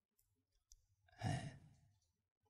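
A man's single short breath, like a sigh, picked up close by a handheld microphone a little past one second in. A couple of very faint clicks come before it, and the rest is near silence.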